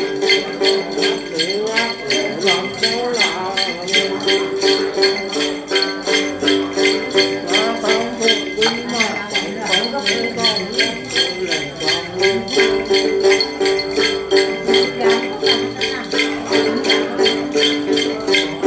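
Then music: a đàn tính, the Tày long-necked gourd lute, plucked steadily while a cluster of small jingle bells is shaken in an even beat of about three to four strokes a second. A man's wavering Then singing comes in about two seconds in and stops about twelve seconds in, leaving the lute and bells.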